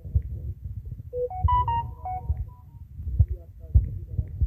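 Phone notification sound: a quick melody of short electronic beeps lasting about a second and a half, starting about a second in. It plays over a low rumbling background with dull thumps.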